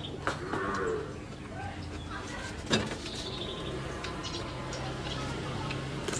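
Eating sounds from raw cucumber being bitten and chewed: scattered crisp crunches, with one sharp, loudest click about halfway through. A low, steady drone runs under them in the second half.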